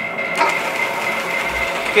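Cyril Bath 150-ton mechanical press brake running, a steady motor hum with a thin high whine held at one pitch.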